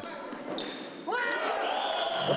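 Live sound of a floorball match in a sports hall: quiet court noise at first, then from about a second in, shouting voices with a steady high tone held over them.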